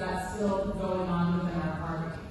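A person's voice holding a long, level-pitched hum, like a drawn-out 'mmm' of hesitation before answering. It fades near the end.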